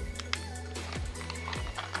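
Background music with steady low notes, with a few light clicks and crinkles from a small plastic packet being handled.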